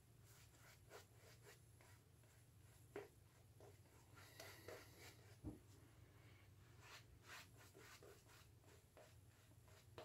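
Near silence, with faint, scattered soft brushing sounds of a shaving brush working lather onto the face.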